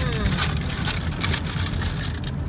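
Steady low rumble of road and engine noise with tyre hiss, heard from inside a moving car's cabin.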